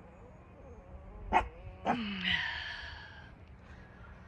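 A dog barks twice, about a second and a half and two seconds in, then whines for about a second.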